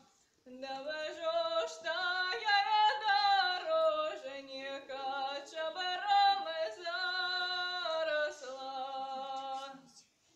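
A young woman singing a Belarusian folk song solo and unaccompanied. After a short breath at the start, she sings one long phrase of held notes joined by slides, and breaks off for breath again just before the end.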